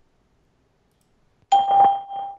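Skype call testing service beep: near silence, then a single steady electronic tone about a second and a half in that carries on past the end. It marks the end of the recorded test message, just before the message is played back.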